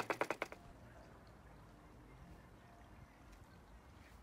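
Rapid knocking and rattling, about ten knocks a second, from a table being shaken by hand to vibrate air bubbles out of freshly poured concrete in a countertop mold; it stops about half a second in, leaving only a faint steady background.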